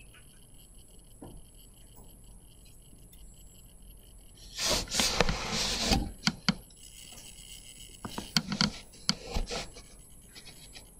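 A loud rubbing, scraping noise lasting about a second and a half around the middle, followed by a few sharp clicks and then a cluster of clicks and knocks near the end.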